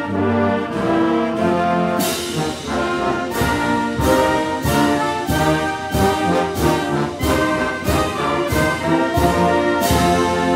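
Military-style brass band playing a national anthem, with strong accented beats about one and a half a second from about two seconds in.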